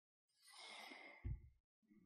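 Near silence, with a man's faint breath as a soft hiss for about a second and a small low bump about a second and a quarter in.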